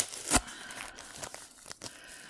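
Clear plastic bag of glitter crinkling as it is handled, with a louder crackle about a third of a second in and scattered smaller ones after.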